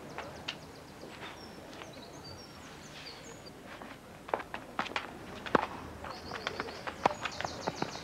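Sounds of a tennis rally: scuffing footsteps on court, then from about halfway a run of sharp knocks from racket strikes, ball bounces and footfalls. High twittering chirps come and go in the background.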